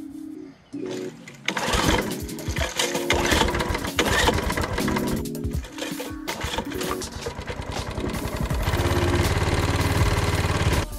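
Background music throughout; near the end a 5 hp Briggs & Stratton single-cylinder mower engine starts and runs with an even, fast low beat.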